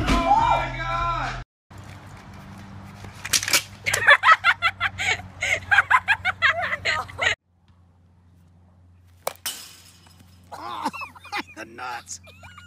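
A ceiling-mounted dance pole tears loose from its mount and crashes down with a man on it, over loud voices. More voices follow in short bursts.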